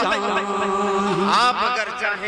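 A man's voice chanting a naat with no instruments, drawing out one long held note that glides upward about one and a half seconds in.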